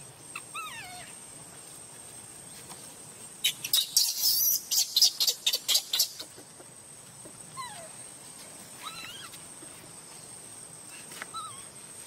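Infant macaque crying while its mother handles it: short falling whimpers, with a loud run of rapid shrill squeals in the middle.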